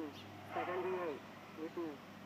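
A FrSky Taranis radio transmitter's synthesized voice calls out the receiver's RSSI signal-strength number through its small speaker, in short announcements that come every two seconds. The reading is being taken with one of the receiver's two diversity antennas covered by hand.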